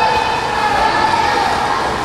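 A sustained high tone that drifts slowly down in pitch and fades out near the end.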